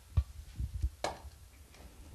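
A few soft low knocks and one sharper click as a hand grater and a lemon are picked up and set against a wooden cutting board, just before grating lemon peel.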